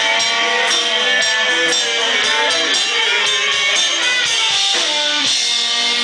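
Acoustic guitar strummed in a steady rhythm, about two strokes a second, with no singing.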